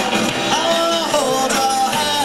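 Live rock band playing, with electric guitar, heard from within the audience.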